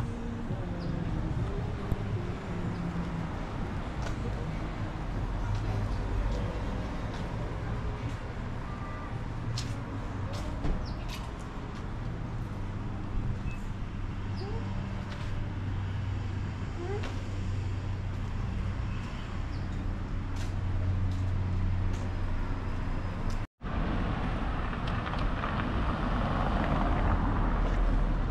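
Street traffic: a steady low engine hum from road vehicles runs under the scene. About three-quarters of the way through the sound drops out for a split second, and a louder, even rushing noise follows.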